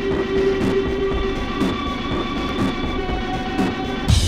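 Sound of an approaching train: a steady rumble under held horn-like tones that change pitch twice, with a faint tick about once a second.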